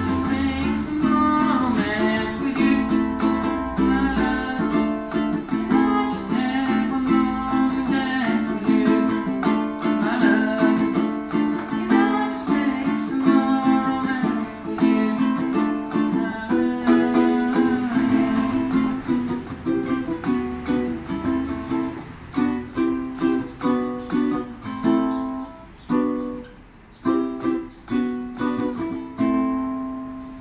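Live solo acoustic music: a ukulele strummed steadily with a wordless lead melody over it. The strumming thins to sparse, separated chords over the last several seconds as the song winds down.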